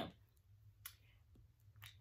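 Near silence: room tone with two faint short clicks, about a second apart.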